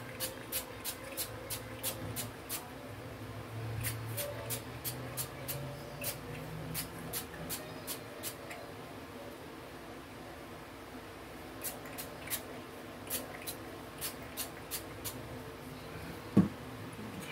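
Rapid short spritzes from a pump spray bottle of spray gel being sprayed onto curly hair, about three a second in runs, with a pause of about three seconds in the middle.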